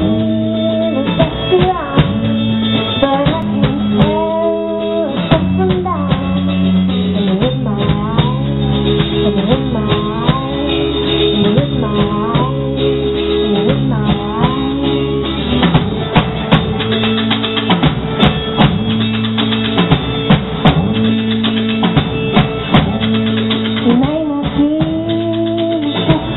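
A live band playing: a man sings lead over strummed acoustic guitar, bass and drum kit.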